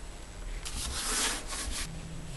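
Hands rubbing and smoothing patterned paper down onto a chipboard binder cover to set the double-sided adhesive. It makes a dry, hissing paper rub that starts about half a second in and lasts just over a second.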